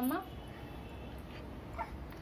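A toddler babbling "mamma": one drawn-out, rising call that breaks off just after the start, then a short faint call near the end.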